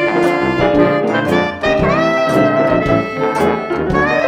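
Jazz band music with horns playing over a steady beat; a long horn note slides up into pitch about two seconds in.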